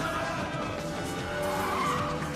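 Action-film score playing over the chase sound effects of a fight scene, including a vehicle-like skidding sound toward the end.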